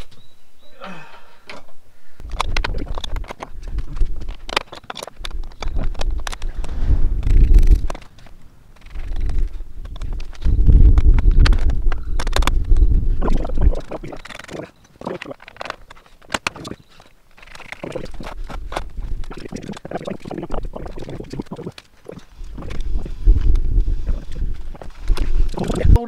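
Repeated clinks and knocks of metal bolts, nuts and frame parts being handled and fitted as the table is bolted back together, with long stretches of low rumble.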